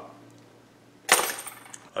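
A brief rustle and clink of fishing tackle being handled, starting suddenly about a second in and fading within under a second.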